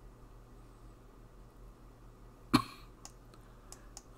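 A person coughs once, briefly, about two and a half seconds in, the loudest sound here; a few faint clicks follow over a low steady hum.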